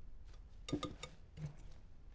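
Wire whisk clicking lightly against a glass mixing bowl a few times while folding whipped egg whites into sponge cake batter.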